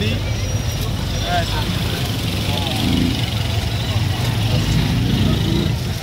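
Motor tricycle's small engine running as it rides through traffic, a steady low rumble with road noise, heard from the open passenger seat, with faint voices in the background.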